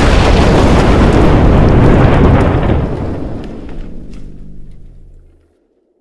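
Dubbed explosion-style crash sound effect: a loud blast with a deep rumble that sets in suddenly and fades away over about five seconds, ending in silence just before the end.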